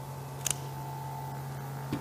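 Quiet room tone: a steady low hum with a fainter, higher steady tone over background hiss, broken by one small click about half a second in.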